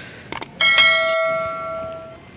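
Subscribe-button sound effect: two quick clicks, then a single bell ding a little after half a second in that rings on and slowly fades.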